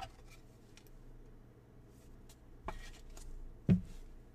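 Trading cards being handled and set down on a table: mostly quiet, with two short knocks near the end, the second one louder.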